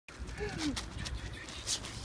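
A French bulldog mix giving one short falling whine, followed by breathy, snuffling noises, with a low wind rumble on the microphone.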